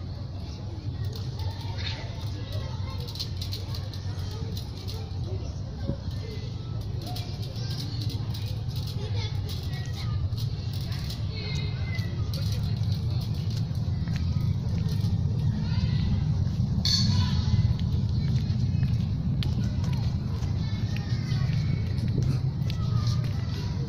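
Outdoor courtyard ambience: a steady low rumble that grows louder in the second half, with faint distant voices over it and a brief hiss in the last third.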